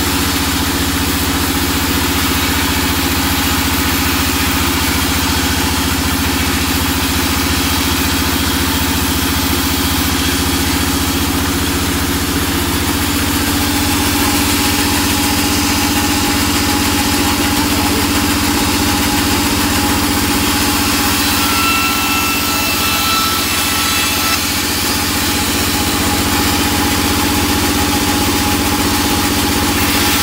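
Large band saw running steadily while resawing a teak plank, a constant heavy machine drone. A thin high tone comes and goes in the last third.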